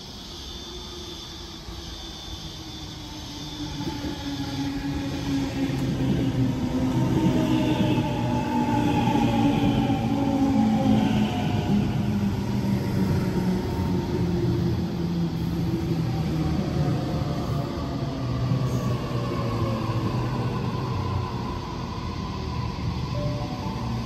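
Sydney Trains double-deck electric train running into the platform and slowing. Loudness builds over the first few seconds to a steady rumble, with a whine of several tones that falls slowly in pitch as the train brakes.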